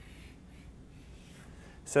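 Chalk scratching faintly on a blackboard in a few short strokes as a box is drawn around a written equation.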